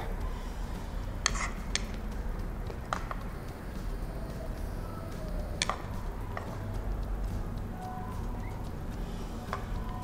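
A metal spoon clicking and scraping against a small bowl as sliced onion is spooned onto tostadas: a few light, scattered clicks over a low steady hum.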